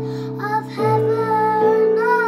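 Children singing a slow sacred song over an instrumental accompaniment, holding long notes; the sung line and the low accompanying notes change a little under a second in.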